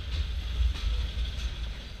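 Empty stake-sided freight flatcars of a Portland and Western train rolling past: a steady low rumble of wheels on rail, with a few faint clicks.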